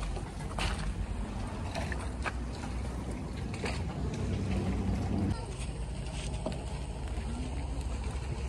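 Outdoor lakeside ambience: a steady low rumble with a few light clicks; the rumble drops off abruptly about five seconds in.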